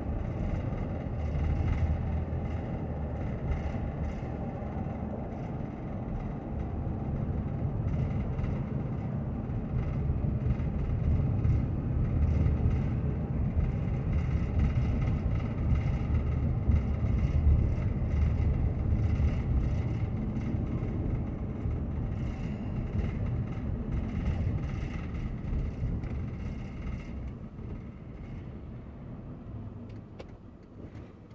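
A car driving, heard from inside the cabin: a steady low rumble of engine and tyres on the road. It grows quieter over the last few seconds as the car slows to a stop at an intersection.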